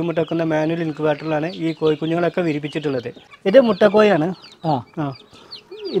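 Fayoumi hens clucking in a wire cage, with short high peeps from chicks in the last second or two.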